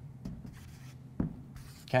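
Marker pen writing on an easel board, a faint run of light strokes with one sharper tick a little after a second in.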